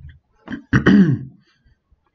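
A man clearing his throat once: a short rasp, then a louder voiced 'ahem' lasting about half a second that rises and falls in pitch.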